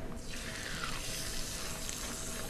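Hot stainless-steel skillet sizzling steadily as olive oil and a pounded chicken breast go into it.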